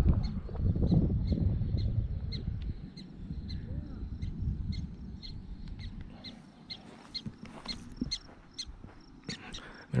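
Black-tailed prairie dogs giving alarm calls, a steady run of short high chirps about two or three a second, warning of a person approaching their burrows.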